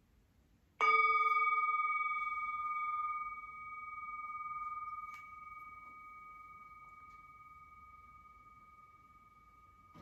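A meditation bell struck once about a second in, its clear tone ringing on and slowly fading, with a lower tone and the highest ones dying away within a few seconds.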